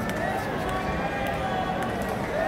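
Arena crowd: many spectators' voices talking and calling out over one another, at a steady level.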